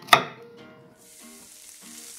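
A knife chops once through onion onto a wooden cutting board just after the start. From about a second in, diced onion sizzles in hot oil in a wok.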